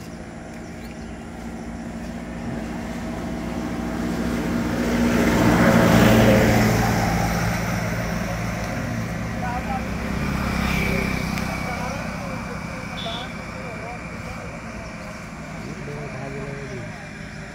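A motor vehicle passing by on the road, its engine and tyre noise growing louder to a peak about six seconds in and then fading away; a second, quieter vehicle passes around ten to eleven seconds in.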